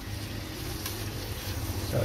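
Chicken pieces frying in a small pot on a gas burner while being stirred, over a steady low hum.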